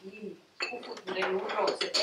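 Speech: a person talking, opening with a short held hum-like vocal sound before the words start about half a second in.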